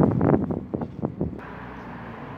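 Wind buffeting a phone's microphone outdoors, loud and gusty for about the first second and a half, then dropping to a quieter low rumble.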